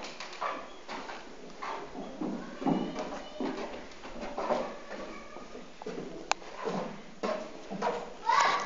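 Irregular knocks and thuds, with a single sharp click about six seconds in.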